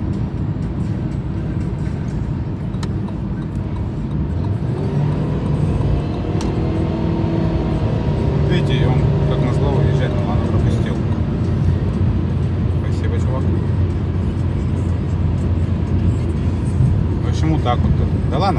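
Engine and tyre noise inside a car's cabin as it speeds up to overtake a truck on the highway. The noise grows louder about four seconds in and stays up while the car passes alongside the truck.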